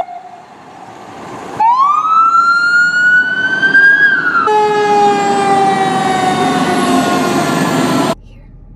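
Fire apparatus sirens in quick edited cuts: a fire command car's siren rising in a wail, then a ladder truck's siren falling slowly in pitch over its engine and road noise. The sirens are loud.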